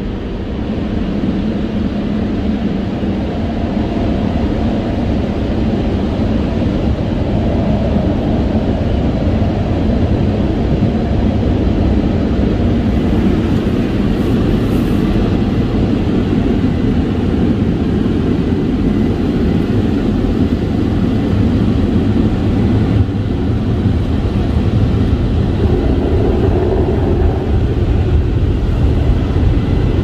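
Automatic car wash working over the car, heard from inside the cabin: its brushes and water spray make a loud, steady wash of noise on the body and windows.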